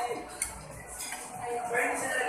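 Metal spoon and fork clinking against a ceramic serving dish while eating: a sharp clink about half a second in and a fainter one about a second in, with voices at the start and near the end.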